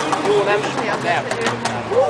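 People talking close by, their words unclear, with a few faint clicks in the background.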